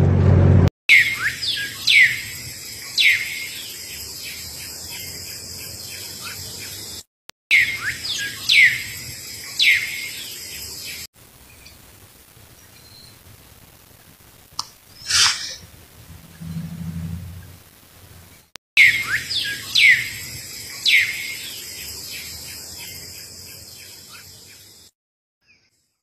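Birds calling: three sharp, quick, downward-sweeping chirps over a steady high hiss, a stretch heard three times over. Between the second and third is a quieter stretch with one loud sweeping sound.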